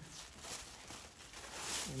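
Thin packing paper rustling as it is pulled out from inside a folded sweatshirt, along with the cloth being handled. The rustle grows louder towards the end.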